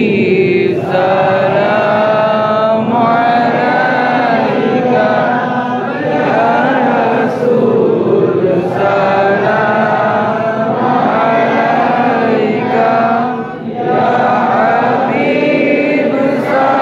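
An imam reciting the Quran aloud in Arabic during congregational prayer, a chanted melody of long held, gliding notes with brief pauses between verses every few seconds.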